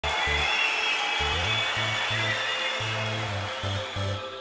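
Electronic dance-music intro: short repeating bass notes under a loud hiss-like wash of noise that thins out toward the end.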